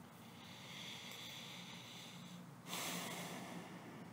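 A person breathing audibly through the nose: a slow inhale of about two seconds, then a louder exhale that fades away.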